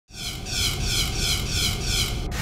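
Logo-animation sound effect: a low rumble under a high, sweeping jet-like whoosh that pulses about twice a second.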